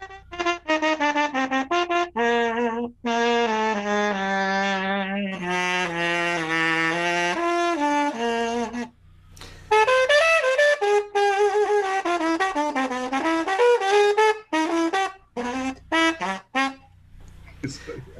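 Trumpet played through a Huber straight mute fitted with its kazoo-resonator base, giving a really buzzy muted tone. It plays a phrase of quick short notes running into held notes, breaks off briefly about halfway, then plays a second phrase that ends shortly before the end.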